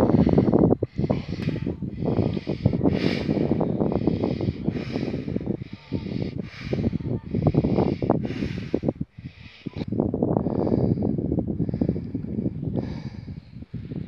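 Mouth-to-mouth rescue breaths blown into a limp deer's snout: rapid, forceful hissing puffs of breath, about one to two a second, as a man tries to revive the apparently dead animal.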